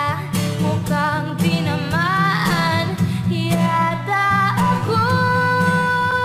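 Recorded OPM (Filipino pop) love song: a woman singing over instrumental backing, with her voice settling into one long held note near the end.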